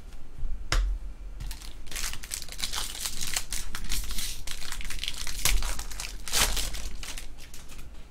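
Foil wrapper of a baseball card pack being torn open and crinkled in the hands. There is a sharp snap about a second in, then a dense crackle from about two seconds in, loudest near the end.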